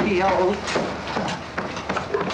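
A man's short vocal sound, then a run of irregular sharp knocks and clatter.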